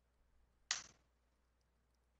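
Near silence, broken once about two-thirds of a second in by a single short click.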